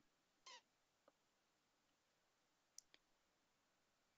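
Near silence with a quick double click of a computer mouse a little before three seconds in, and a brief faint vocal sound about half a second in.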